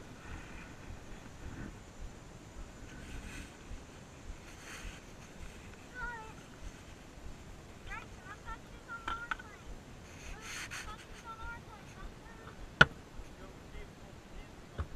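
Low background with faint, distant voices talking on and off, and one sharp click or knock near the end.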